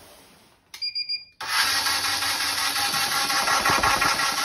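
StrikeMaster 24-volt lithium-battery ice auger's electric motor running with the auger spinning freely in the air. It starts suddenly about a second and a half in and then runs loud and steady. Just before it, there is a short high-pitched tone.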